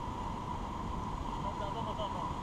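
Steady rushing of whitewater river rapids around an inflatable raft.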